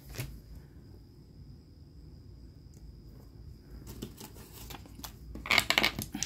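Small dice rattled in a hand near the end, a short burst of rapid clicks that comes just before they are rolled onto a table top; before that only faint handling noise.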